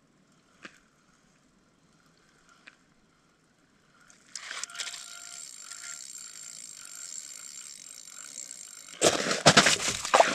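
Fishing reel whirring steadily as a hooked lake trout is reeled in through an ice hole, starting about four seconds in. Near the end, a burst of loud, irregular noise as the line is grabbed by hand at the hole.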